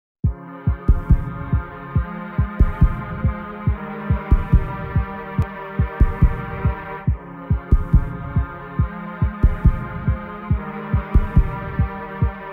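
Intro of a pop song: a recorded heartbeat thumping in pairs at a steady pace, under sustained synth chords that change about every three and a half seconds.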